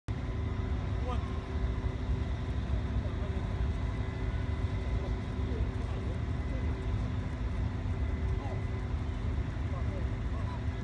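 Steady low outdoor rumble with a faint constant hum, and faint distant voices now and then; no clear calls from the swans.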